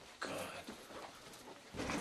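A man's low, dismayed groan of "oh", followed by quiet room tone; near the end the background gets louder.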